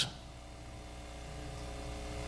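A pause in speech: only faint room tone, a steady low hum with a few faint held tones, slowly growing a little louder.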